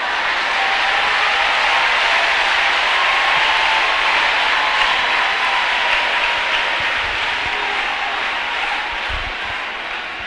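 Church congregation applauding, with scattered voices in the crowd. It swells over the first couple of seconds, holds, then slowly dies down toward the end.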